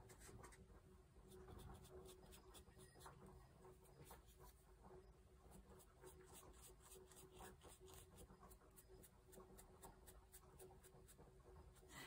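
Faint, quick scratchy strokes of a small ink blending brush being brushed and dabbed onto the edges of a fussy-cut paper flower.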